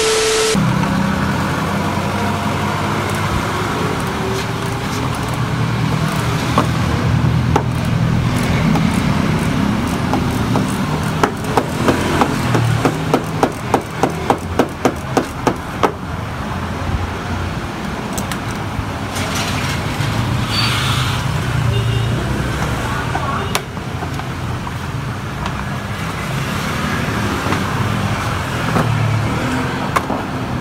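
Steady traffic and vehicle engine noise, opened by a brief burst of TV-static sound with a beep. Near the middle comes a run of about a dozen sharp clicks, two to three a second, as a screwdriver works the scooter's floorboard screws.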